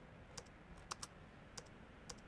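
Faint, sparse keystrokes on a slim low-profile computer keyboard, about five separate key clicks with gaps between them.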